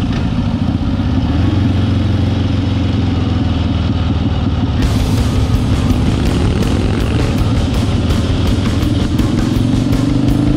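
Harley-Davidson Ironhead Sportster's air-cooled V-twin engine running as the bike is ridden along at road speed, steady and loud. There is a cut in the sound about five seconds in.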